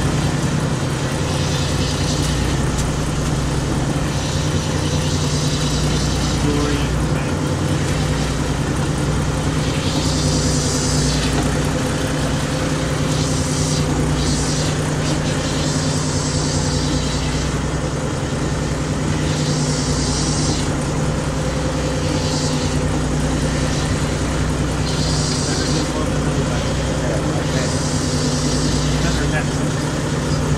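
Steady drone of a small inshore fishing boat's engine and net hauler running, with short hissing washes every few seconds over it.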